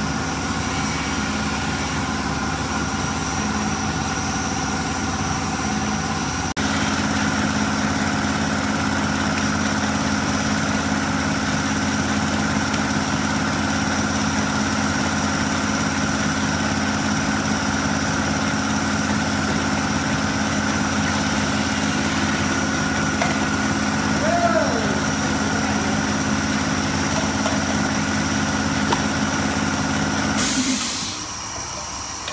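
Bottle flame-treating machine running: a steady motor hum and whine from its conveyor and spinning bottle holders over the hiss of its gas burners. The hum steps up louder about six seconds in.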